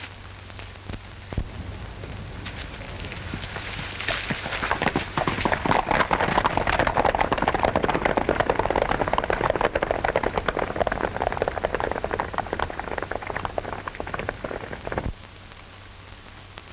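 A dense, rapid clatter of many small knocks. It swells from about four seconds in, fades, and cuts off sharply near the end, over the steady hiss and low hum of an old film soundtrack.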